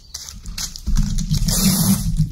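Sticky tape being pulled off the roll of a tape dispenser: a loud, rough rasp starting about a second in, after a quieter stretch of handling.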